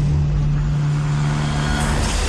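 Cinematic sound design: a steady, loud low drone held over a deep rumble, with a hissing whoosh building up near the end.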